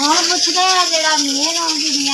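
A woman talking over a steady high-pitched hiss.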